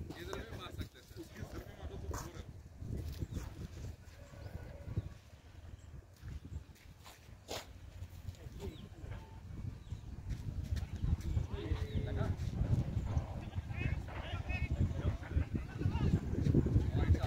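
Faint, indistinct voices carrying across an open field over a low, uneven rumble, growing louder toward the end.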